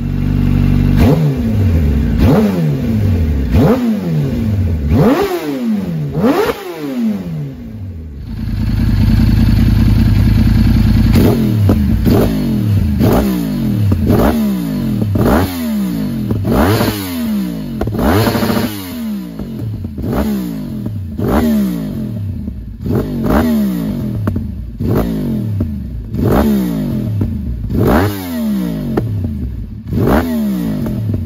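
Yamaha R1 crossplane inline-four, through an Akrapovic exhaust, free-revved in repeated blips that rise and fall about once a second. About eight seconds in, the revs are held steady for about three seconds, then the blipping resumes.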